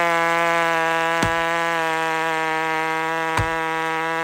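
Two-stroke chainsaw running at full throttle in a cut through a log: a steady, loud buzz that holds its pitch under load. Two short clicks come about a second in and near the end.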